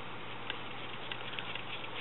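A steady low hiss with a few faint, light ticks as fly-tying thread is formed into a dubbing loop at the vise.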